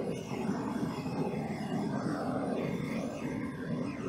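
Handheld gas torch burning with a steady rushing hiss as it is passed over wet poured acrylic paint, the usual way of popping air bubbles and bringing up cells.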